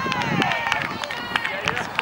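Several voices shouting and calling out over one another outdoors, one drawn-out call falling in pitch near the start, with scattered sharp clicks.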